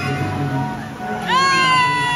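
A poolside crowd cheering on a swimming race. About a second in, a single high-pitched, drawn-out yell rises sharply and holds over steady tones.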